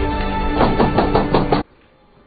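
About half a dozen quick knocks on a door over background music; the knocks and the music stop abruptly shortly before the end.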